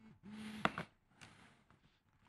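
A person's low, steady hum, twice in quick succession like a closed-mouth "mm-hm", followed by a short click; the rest is very quiet.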